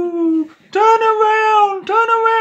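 A person's voice making long, drawn-out wailing "ooh" cries, each held on a steady pitch: one ends about half a second in and two more follow.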